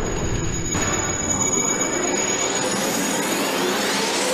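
Logo-animation sound effects: a loud, steady whooshing rush with a thin high whistle held over it, then a sweep rising in pitch toward the end.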